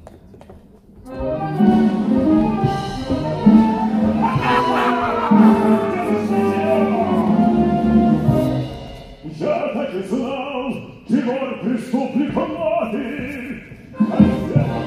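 Theatre music with singing: after a quiet first second, a sung passage of long held notes, then quicker, more broken sung phrases from about nine seconds in.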